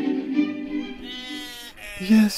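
Orchestral theme music with strings fades out, and a sheep gives one long, wavering bleat about half a second in.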